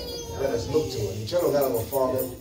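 A man speaking into a microphone in drawn-out tones, his pitch sliding.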